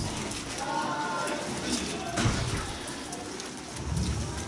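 Bird cooing, like doves, faint behind the room, with a few dull low thumps: one at the start, one about two seconds in, and one at the end.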